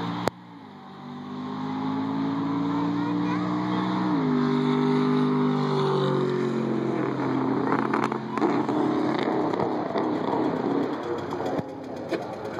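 A car's engine accelerating hard along a race track, its pitch climbing, jumping up about four seconds in, then stepping down a little after six and near seven and a half seconds as it shifts gears. A sharp click comes just after the start.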